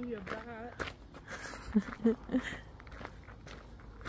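Footsteps of people hiking a dry, brushy hillside trail, heard as scattered irregular steps, with a drawn-out wavering 'ooh' from a woman at the start and a few short vocal sounds around the middle.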